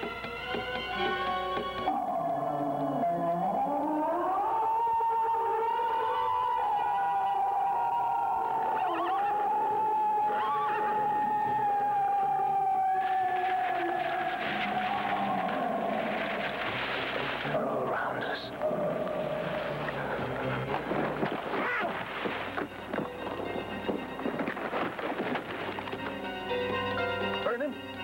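Eerie film score built on one long wailing tone. It glides upward about two seconds in, then holds and sinks slowly for over ten seconds, while a harsh crackling noise builds up beneath it from about halfway through.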